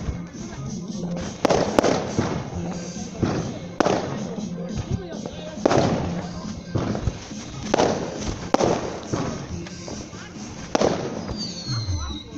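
New Year's Eve fireworks going off: a series of sharp, loud bangs every second or two, each with an echoing tail.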